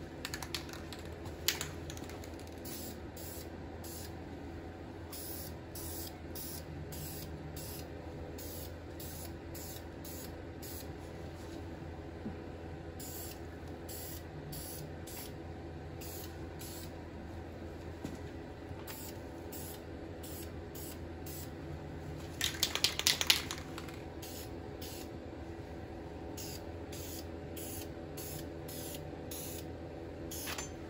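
Aerosol spray can of VHT Flameproof very-high-temperature paint hissing in many short bursts as it is sprayed onto a cast-iron exhaust manifold. There is a brief, louder clatter about two-thirds of the way through, over a steady low hum.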